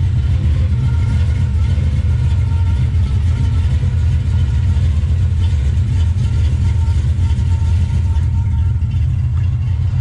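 A 1964 Chevrolet Chevelle's 350 V8 idling with a steady low exhaust rumble, through headers and a dual exhaust with Flowmaster-style mufflers.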